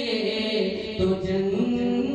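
A man singing a naat unaccompanied into a microphone, amplified over loudspeakers, holding long notes that dip and then rise in pitch about halfway through.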